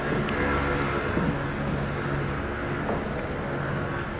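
Steady outdoor urban background noise: an even low hum with a constant drone.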